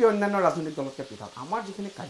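A man speaking in short phrases, over a faint steady hiss.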